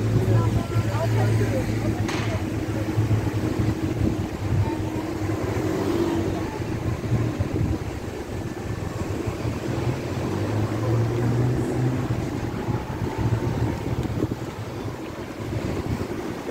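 Street ambience: a steady low engine hum from traffic, swelling at the start and again about two-thirds of the way through, with wind rushing on the microphone.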